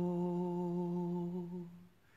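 A man humming one long, steady, low note, unaccompanied, that fades away near the end.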